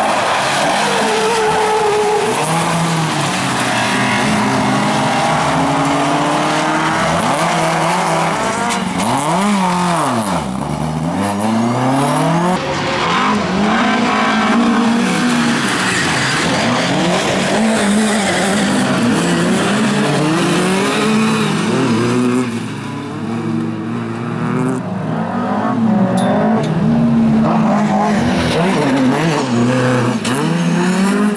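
Several bilcross race cars running together, their engines revving up and dropping back again and again through the corners, with one car sweeping sharply down and back up in pitch about ten seconds in. Tyres sliding on loose gravel.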